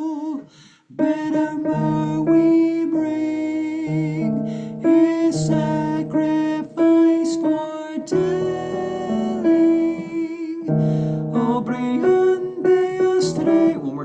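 Piano-voiced keyboard playing a single choral part, the tenor line of measures 81 to 85, as a steady sequence of held notes. It is heard through a video-call connection.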